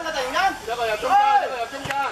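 High-pitched voices shouting and calling out across a football pitch, several short shouts one after another.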